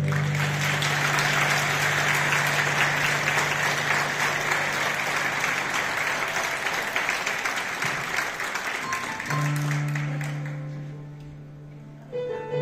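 Audience applause, dense and steady, dying away over the last few seconds. About nine seconds in, a held keyboard chord comes in under it.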